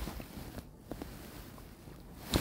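Faint handling noise with a few soft clicks: a stethoscope chestpiece being lifted off the chest and turned over from bell to diaphragm.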